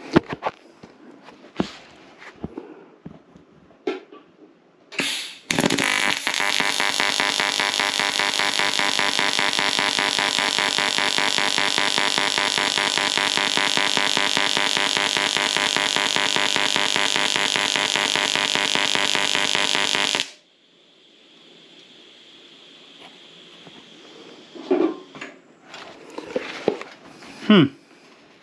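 AC pulse TIG welding arc on aluminium from a YesWelder TIG-250P ACDC inverter welder: a loud, even buzz with a fast regular pulsing. It is struck about five seconds in, held for about fifteen seconds, and cuts off suddenly when the arc is broken.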